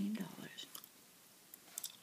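Bubble gum being chewed close to the microphone: a few soft, wet mouth clicks and smacks in two short clusters, after a soft-spoken word trails off.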